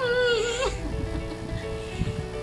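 A short, high, wavering bleat-like cry lasting about two-thirds of a second, over steady background music.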